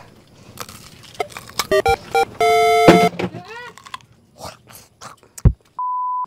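A string of edited-in electronic sound effects: clicks and short pitched blips, a loud held buzzy tone about halfway through, and a deep thump near the end. Just before the end a steady test-tone beep starts, of the kind that goes with a TV colour-bar test card.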